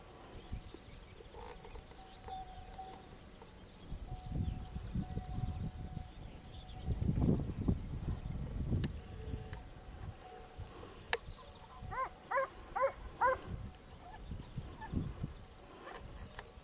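Insects chirring steadily and high-pitched in rural scrubland, with low rumbling buffets on the microphone through the middle. Near the end an animal gives a quick run of four short rising calls.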